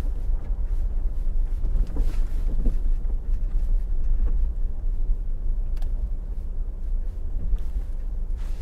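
Steady low rumble of wind buffeting the microphone, mixed with the road noise of a slowly moving vehicle, with a few faint knocks.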